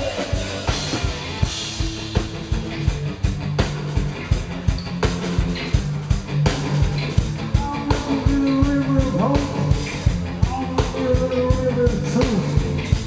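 Live punk rock band playing an instrumental stretch: electric guitars and bass over a steady, fast drum beat.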